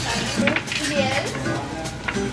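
Ceramic and glass pieces clinking and knocking as they are set down on a glass-topped counter, in a few separate clinks.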